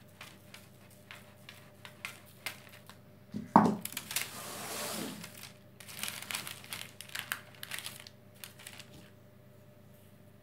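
Baking paper crinkling and rustling as hands handle it around a loaf of dough, in two spells, the first starting just after a sharp knock about three and a half seconds in. Light scattered taps come before.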